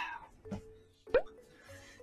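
A cartoon-style "plop" sound effect: one quick upward-gliding pop a little over a second in, over faint background music.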